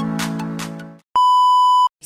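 Electronic intro music, a held chord over a steady beat, fades out about a second in, followed by a single loud, steady electronic beep lasting under a second that cuts off sharply.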